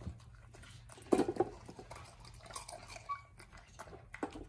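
Samoyed puppy crunching and chewing pieces of ice in a metal dog bowl. Irregular crackling bites come throughout, with the loudest burst of crunching about a second in.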